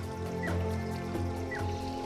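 Background documentary music: sustained low tones, with two short high chirps about a second apart.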